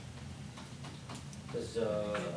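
Quiet room tone with a few faint, irregular ticks. A man starts speaking about a second and a half in.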